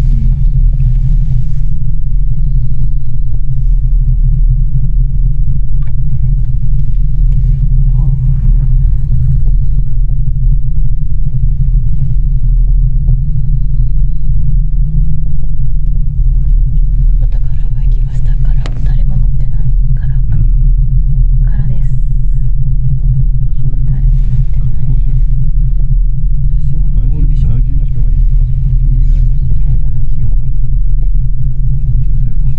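Loud, steady low rumble heard from inside a moving Miyajima Ropeway gondola as it rides along its cable.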